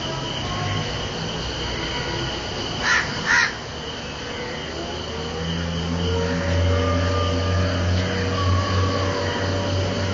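House crow giving two short, harsh caws in quick succession about three seconds in. Under them runs a steady low hum with long, drawn-out squealing tones, some sliding in pitch.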